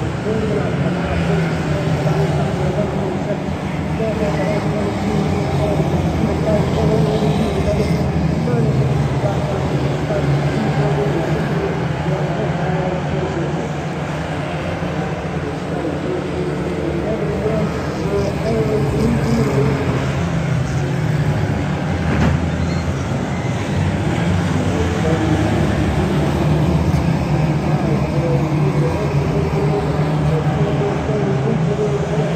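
A pack of Ministox stock cars racing round an oval: several small engines running together in a steady drone, their pitch wavering up and down as the cars pass and circulate.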